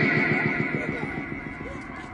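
A long drawn-out shouted call of 'Allahu Akbar' trailing off, the held voice fading away over the first second and a half.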